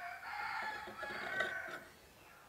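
A rooster crowing once, one long call of nearly two seconds.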